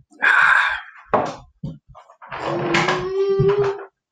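A child's voice making loud noises, ending in a long held wail near the end.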